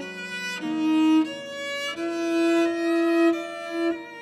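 Cello and piano playing classical chamber music. The cello draws bowed notes, the longest held from about two seconds in until just before the end.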